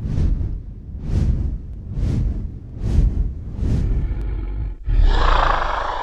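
Dragon roar sound effect: five deep, breathy growls about a second apart, then a longer, louder roar from about five seconds in that fades away.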